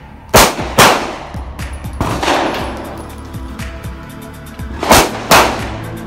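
Compact semi-automatic pistol fired in two quick pairs: two loud shots about half a second apart shortly after the start, and two more about a second before the end, each with a ringing tail off the range berm. Background music plays underneath.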